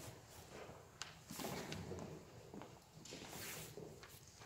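Quiet footsteps and clothing rustle of a person walking away from close by, with one sharp click about a second in.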